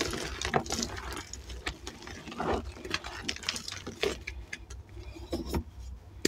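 Dyed gym chalk crumbled and squeezed by hand over a tub of loose chalk: irregular soft crunches and crackles, with dry rustling as pieces and powder fall.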